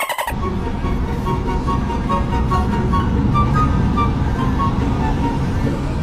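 Steady road and wind noise of a moving vehicle at speed, with faint background music over it.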